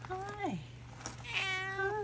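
Brown tabby-and-white cat meowing twice: a short meow, then a longer one, each dropping in pitch at the end.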